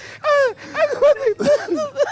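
A man laughing hard: a long, high, falling whoop, then a quick run of short bursts of laughter.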